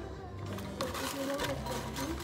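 Background music playing, with a melody over a steady beat.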